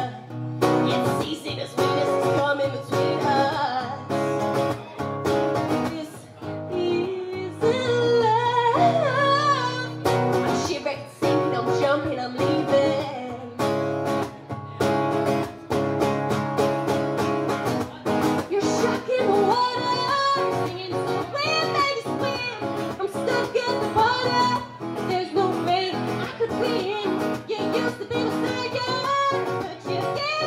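Live solo song: a woman singing while playing an acoustic guitar.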